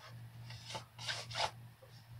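A hand rubbing over the clear plastic blister packaging of an action-figure set, wiping off dust in about four short strokes, over a low steady hum.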